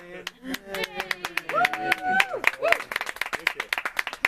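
Audience clapping after a song, a few scattered claps at first growing to denser applause, with voices calling out over it, one of them a drawn-out call about two seconds in.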